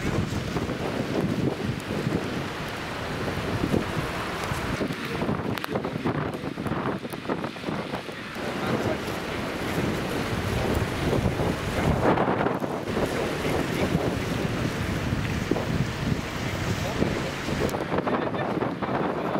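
Wind gusting across the microphone: an uneven rushing rumble that rises and falls.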